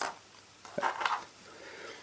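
A glass light bulb set down on a tabletop, a single light knock a little under a second in, with faint handling of thin wires.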